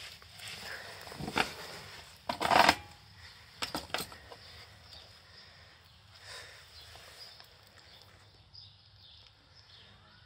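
Handling noise of an RC car being gripped and turned over on a metal grating: a few short knocks and rattles, the loudest cluster about two and a half seconds in, then only faint background hiss.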